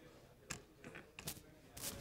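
Faint handling noise: a handful of short rustles and scrapes spread over about a second and a half, the last one the longest.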